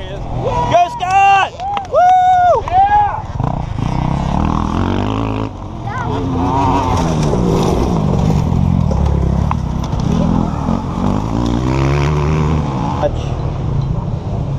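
Off-road racing dirt bikes revving and passing close, their engine pitch rising and falling repeatedly as the riders work the throttle, with a sharper run of revs in the first few seconds.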